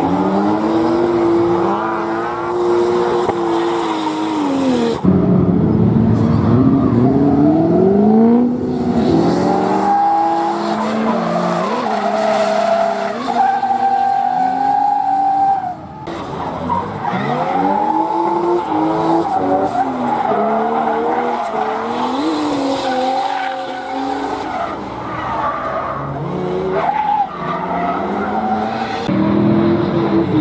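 BMW E36 drift car with a turbocharged Toyota 1JZ inline-six, revving up and down over and over as it slides through corners, with tyres squealing. The sound breaks and restarts about five seconds in and again near sixteen seconds, as separate passes follow one another.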